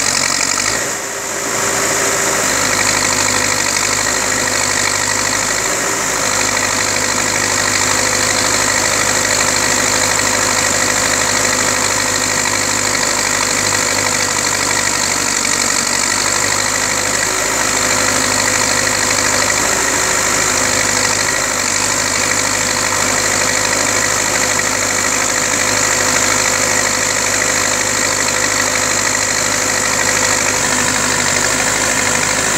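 Diesel engine of heavy construction machinery idling steadily with an even hum, with a brief dip about a second in.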